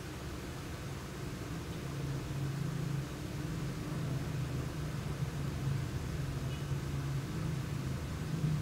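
A steady low machine hum, growing a little louder about two seconds in, over a faint hiss.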